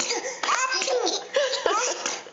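Babies giggling in short, repeated bursts of laughter with high squeals.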